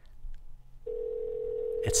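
Telephone ringback tone heard over the studio's phone line: the other end is ringing but not yet answered. One steady ring comes in about a second in and lasts about two seconds.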